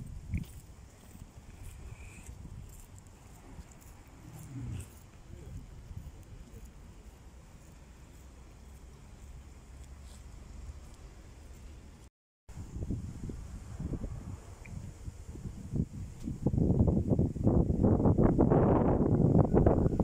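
Wind buffeting a phone's microphone: a low rumble through the first half. After a short gap of silence a little past halfway, it turns loud and gusty in the last few seconds.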